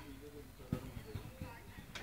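A faint, distant voice, with a few soft low thuds.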